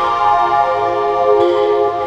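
Background music: sustained synthesizer chords with no beat, the chord changing once or twice.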